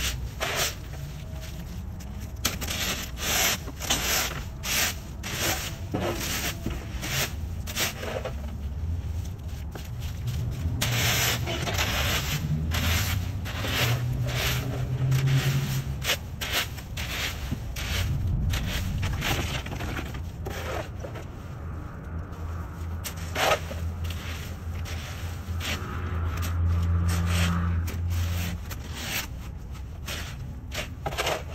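Plastic leaf rake scraping damp leaves across a concrete sidewalk in repeated, irregular strokes, with a shovel scraping leaves up off the pavement. A low rumble runs underneath, swelling about halfway and again near the end.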